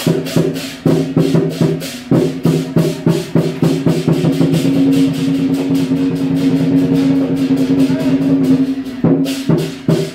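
Southern lion dance percussion: a big drum with crashing cymbals and gong, beating in accented phrases. About four seconds in it runs into a fast continuous roll, and the accented beat returns near the end.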